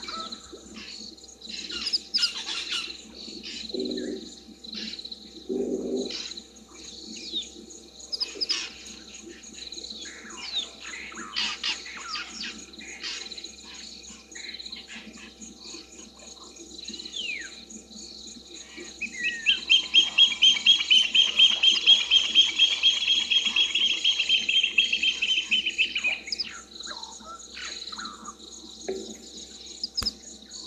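Evening bush chorus of birds: many short chirps and calls, with a loud, fast pulsing trill lasting about seven seconds past the middle. A steady high insect whine runs underneath, and two short low calls come about four and six seconds in.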